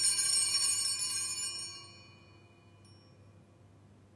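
Altar bells rung at the elevation after the consecration: a shaken, jingling cluster of bells that rings on and dies away over the first two seconds, leaving near silence.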